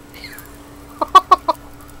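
A ferret dooking: four quick, loud clucks in one short burst about a second in, from a ferret being brushed with a round hairbrush, which it hates.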